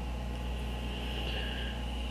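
Steady background room noise in a pause between words: a constant low hum with a faint, even higher-pitched whine above it, with nothing starting or stopping.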